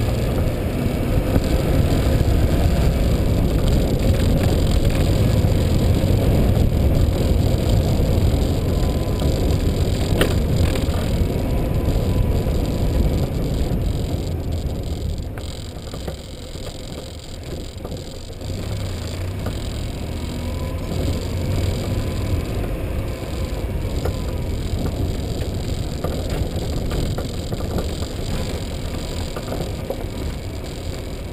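Steady rumble of wind on the microphone and wheels rolling over rough, broken asphalt as the camera moves along, heaviest in the low end and easing for a few seconds about halfway through.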